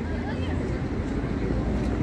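A car driving past on the street close by, a low steady rumble of engine and tyres that swells slightly, with faint voices of passers-by behind it.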